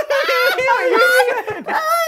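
Several men laughing loudly together, overlapping high-pitched, shrieking laughs.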